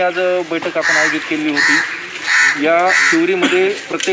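A man speaking steadily, with a crow cawing about four times behind his voice.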